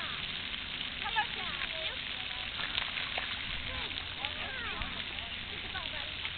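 Indistinct background voices, with short bits of talk about a second in and again a few seconds later, over a steady outdoor hiss.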